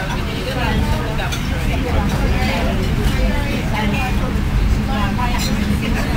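Steady low rumble of a moving passenger train heard from inside the carriage, with indistinct conversation of other passengers over it.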